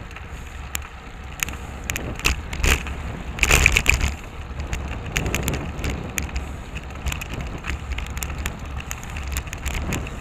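Riding sound from a bicycle-mounted camera: steady wind rumble on the microphone with frequent short clicks and rattles from the bike and camera mount over the pavement, loudest in a rattly burst a little over three seconds in. Traffic runs underneath.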